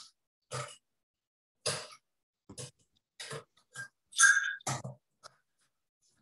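Cocktail-making noises: ice and a bar tin or glass being handled, giving about eight short clinks and clunks at uneven intervals. The loudest comes a little past four seconds in and has a brief bright ring, like metal or glass struck. The sound comes over a video call.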